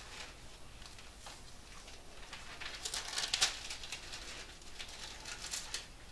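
Bible pages rustling as they are turned, in soft, scattered brushes of paper that cluster about three seconds in, with a few lighter ones near the end.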